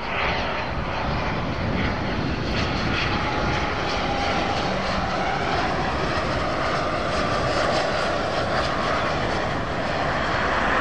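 Alpha Jet's twin turbofan engines on landing approach: a steady rush of jet noise with a faint whine.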